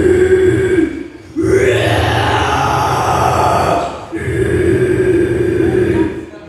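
Female guttural death-metal vocals through a club PA: three long growls, the first and last held on a steady pitch, the middle one rougher and noisier, each breaking off before the next.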